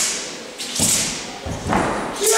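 Three heavy thuds of a wushu athlete's feet stamping and landing on the competition mat during a southern broadsword (nandao) routine, each with a sharp swish of the broadsword cutting the air.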